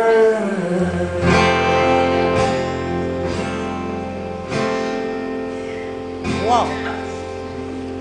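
A live band's closing bars: the last sung note trails off, then acoustic guitar chords are strummed about four times and left to ring over a long held bass note, slowly fading.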